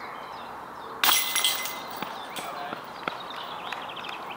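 Chains of a disc golf basket rattling as a putted disc hits them, about a second in: a sudden metallic jingle that rings briefly and dies away within half a second. A few light clicks follow.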